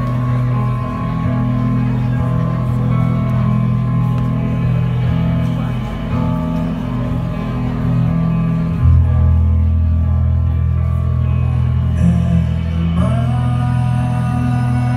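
A live shoegaze/post-rock trio of electric guitar, bass guitar and drums playing sustained, ringing chords over held bass notes in a large hall. A deep, louder bass note comes in about nine seconds in.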